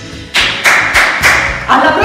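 Dance music fades out, then brisk rhythmic hand clapping starts about a third of a second in, roughly three claps a second. A voice over music comes in near the end.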